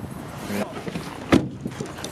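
A single sharp knock about a second and a half in, standing out against low background noise and a brief faint voice.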